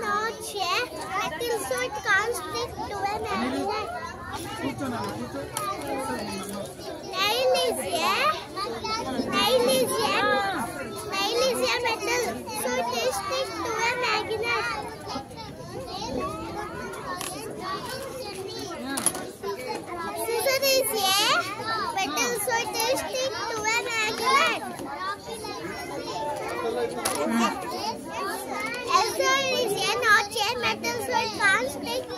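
Children talking throughout, several young voices overlapping in a busy chatter.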